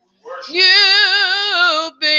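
A solo voice singing a long held note with vibrato in a worship song. It enters after a short breath pause with an upward scoop, then drops slightly in pitch near the end and breaks off.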